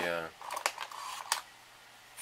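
A few light clicks and knocks of small hand tools being handled on a desk, about one every half second in the first second and a half.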